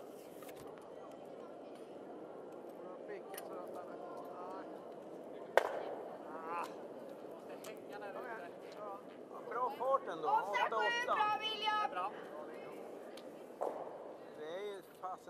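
A granite curling stone sliding down the ice strikes another stone with one sharp crack about five and a half seconds in. Several voices call out loudly a few seconds later.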